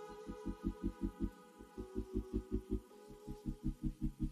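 Low throbbing hum that pulses evenly about seven times a second, with faint steady higher tones above it.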